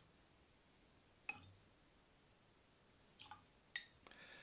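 Near silence with three faint, short clinks of a teaspoon and small glass as water is spooned into a whisky glass: one about a second in, two close together near the end.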